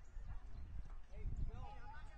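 Distant voices of players and spectators calling out across a soccer field, with a few rising-and-falling shouts past the middle, over a low, irregular rumble.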